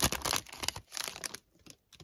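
Foil trading-card pack wrapper crinkling as the pack is opened and the cards are pulled out: a dense burst of crackling for about the first second, thinning to a few faint rustles.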